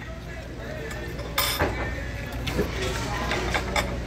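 Restaurant dining-room sound: a steady low hum with faint background chatter and clinking dishes and cutlery. About a second and a half in comes one short, sharp crunch, as a crispy fried taco shell is bitten and chewed.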